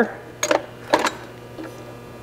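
Two sharp metallic clicks about half a second apart, then a fainter one, from an ADAS calibration rear wheel clamp being fitted onto a car tire, over a steady mains hum.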